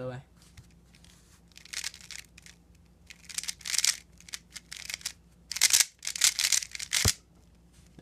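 A plastic 3x3 speedcube being turned rapidly by hand through a PLL algorithm (the Rb perm), in quick bursts of clicking, rasping face turns with short pauses between them. There is a single low knock near the end.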